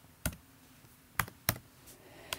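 Three sharp computer keystrokes, about a quarter second, just over a second and a second and a half in, as a number is typed into a box.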